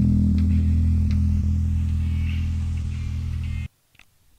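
A final electric guitar chord with bass, ringing out and slowly fading at the end of a rock song, then cut off suddenly near the end as the track ends.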